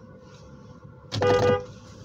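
A car horn gives one short honk of about half a second, at a steady pitch, about a second in, over the steady hum of a car's interior.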